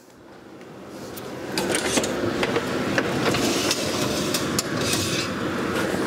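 A hot enameled cast-iron Dutch oven being taken out of a 450° oven: a steady rushing noise builds up over the first second or two, with scattered light clicks and knocks of metal and the oven door.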